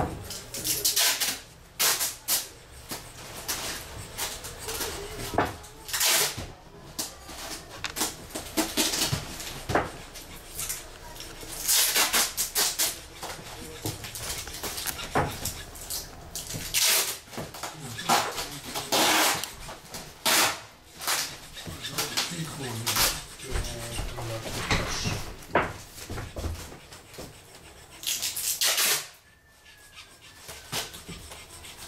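Chisel cutting into the spruce top of an old violin: irregular scraping cuts, some short and some near a second long, as a recess is cut along a crack to take a wooden patch.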